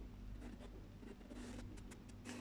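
Faint scratchy rustling over a low steady hum.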